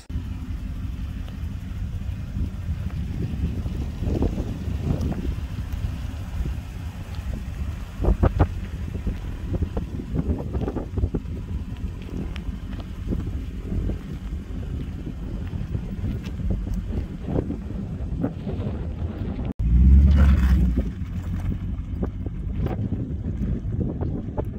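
Wind buffeting the microphone: an uneven low rumble that briefly cuts out near the end, then comes back as a louder gust.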